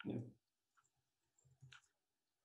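A short spoken "yeah", then near silence over a video-call line, broken by a few faint clicks about a second and a half in.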